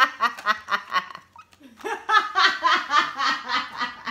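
A woman laughing in quick, rhythmic bursts. After a lull of about a second comes a longer run of laughter.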